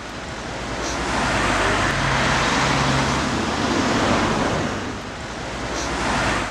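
A steady rushing noise like wind, swelling over the first second or two, holding, then dipping near the end.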